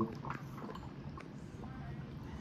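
Faint, irregular bubbling with small scattered clicks: carbon dioxide from subliming dry ice blowing out of a hose into a cup of soapy water, forming boo bubbles.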